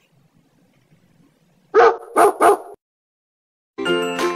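A dog barking three quick times, about two seconds in, with chiming music starting near the end.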